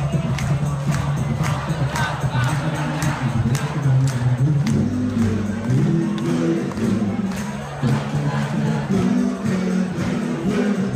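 Live rock-and-roll band playing with a steady beat and a bass line, the crowd clapping along in time.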